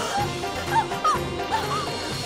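Dramatic TV background score with a steady low pulse, with about four short, high cries that rise and fall laid over it.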